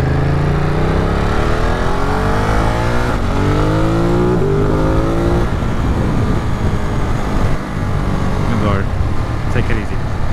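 Ducati Monster 937's V-twin accelerating hard through the gears: the engine note climbs, drops at a shift about three seconds in, climbs again, shifts again about a second and a half later, then settles into a steady cruise. Wind rushes over the helmet throughout.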